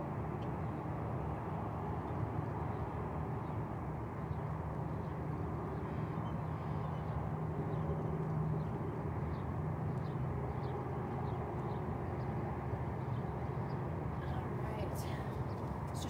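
Steady outdoor background noise with a low hum, holding at an even level throughout.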